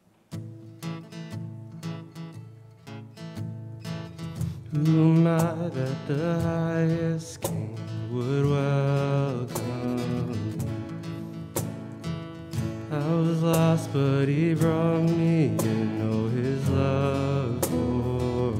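A live worship band plays a contemporary worship song. It opens with strummed acoustic guitar, and a sung melody joins about five seconds in.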